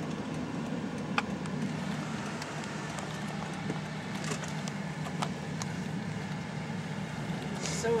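Steady low hum of a car driving slowly, heard from inside the cabin, with a single sharp click about a second in.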